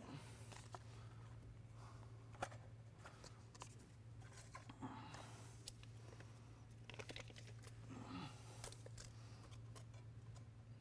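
Near silence: a steady low room hum, with faint scattered clicks and paper rustles from business cards being slid between a planter's double-disc opener blades and a tape measure being handled.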